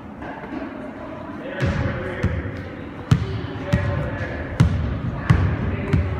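Soccer balls being kicked and bouncing in a gym: about seven sharp thuds that echo off the hard walls, starting about a second and a half in and coming every half second to a second, over background chatter of players.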